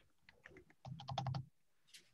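Computer keyboard being typed on: a few scattered keystrokes, then a quick run of clicks about a second in.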